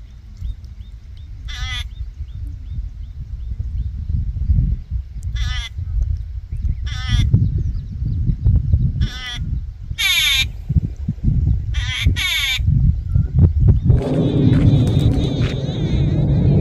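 A bird calling: a series of short quavering, wavering calls spread through the stretch, coming closer together near the end. A steady low rumble of wind on the microphone runs underneath.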